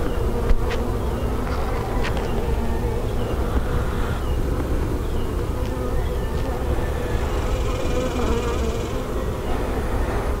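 Honey bees from an opened hive buzzing in a steady, continuous drone. There are a couple of short clicks about half a second and two seconds in.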